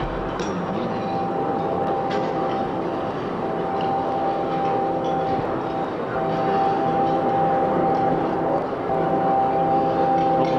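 Ambient drone music in A minor from analog gear: several sustained tones layered over a steady hiss, with scattered faint clicks. The tones break off briefly and resume about every three seconds.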